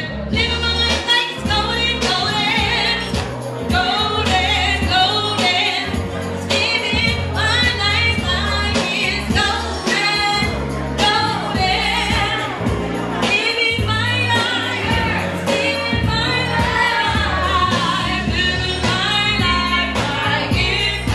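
A woman singing live into a handheld microphone, her voice amplified over backing music with a prominent bass line.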